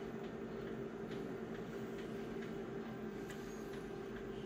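Steady low hum of an idling office photocopier, with a few faint clicks from fingertip taps on its touchscreen.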